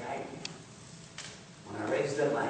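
A man's voice speaking briefly near the start and again near the end, with a couple of faint clicks in between.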